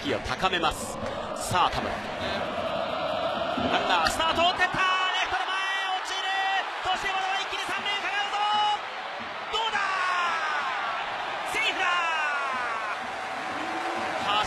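Baseball stadium crowd cheering and shouting while a runner steals a base. Many voices overlap, growing louder about four seconds in, with several falling shouts near the end.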